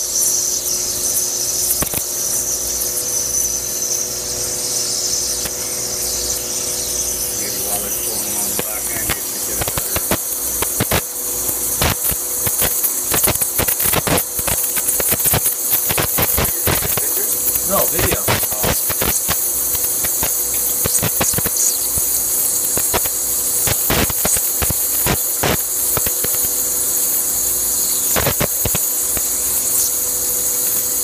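Wire EDM machine cutting: the wire's spark gap crackles and clicks irregularly, over a steady hiss of flushing water and a faint machine hum. The crackling comes thickest in the middle of the stretch.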